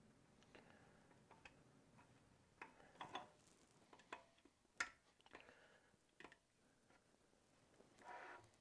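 Faint metallic clicks and ticks as a steel snap ring is worked into its groove with snap ring pliers and pressed home by hand, with one sharper click about five seconds in.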